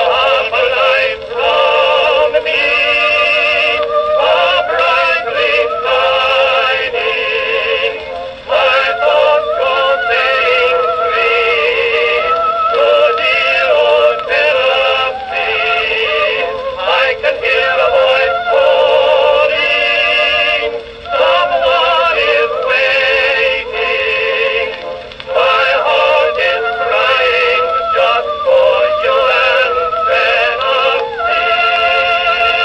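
Music from a 1918 Edison Blue Amberol cylinder record playing on an Edison Amberola 30 phonograph. It is a thin, bass-less early acoustic recording with wavering melodic lines and a few brief dips in loudness.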